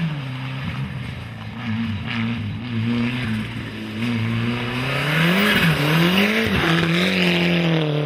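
Ford Sierra Cosworth rally car's turbocharged four-cylinder engine under hard acceleration, its revs climbing and dropping several times with gear changes and lifts of the throttle, loudest in the second half. Tyres hiss on the wet tarmac.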